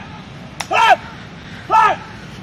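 Two short shouted calls from a person, about a second apart, each rising then falling in pitch, with a sharp click just before the first.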